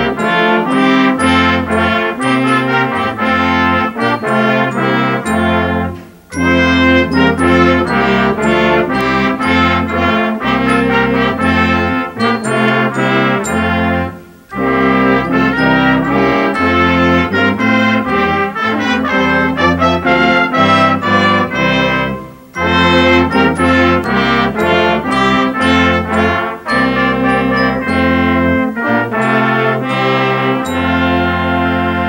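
A small brass ensemble of trumpets, French horns, trombone, baritone horn and tuba playing a piece together, with a strong bass line under the melody. The playing breaks off briefly three times between phrases, about 6, 14 and 22 seconds in.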